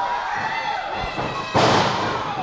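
A wrestler's body slammed down onto the wrestling ring's mat: one loud impact about one and a half seconds in, echoing in the hall.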